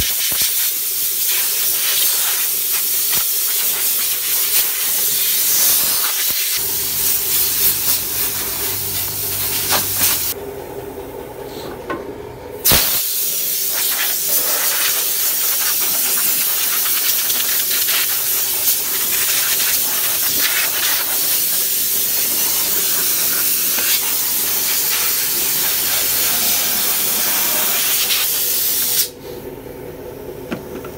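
Compressed-air blow gun on an air hose hissing as it blows dust and dirt out of a car. The jet stops for about two seconds near the middle, starts again with a sharp click, and cuts off shortly before the end.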